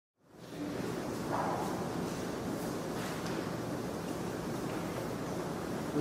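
Steady, even hiss of room tone and recording noise, fading in at the very start.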